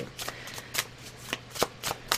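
Tarot cards being shuffled and handled by hand: a run of short, irregular card snaps and taps.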